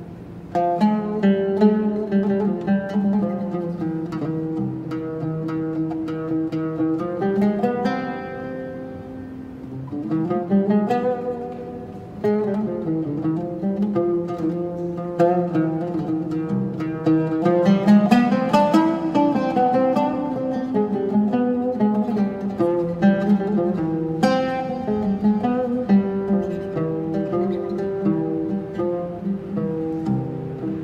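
Solo ‘ūd playing a melody of plucked notes, moving in quick runs with brief lulls.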